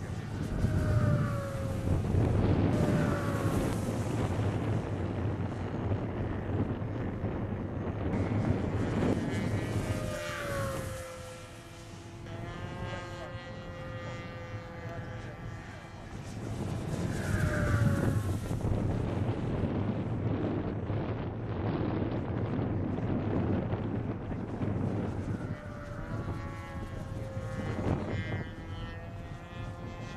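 Electric brushless motor and propeller of a HobbyKing Moray mini pylon racer running on a 4-cell LiPo, a high whine that swells and fades as it makes fast passes. Several times the pitch drops as the plane flies past, loudest near the start and around the middle.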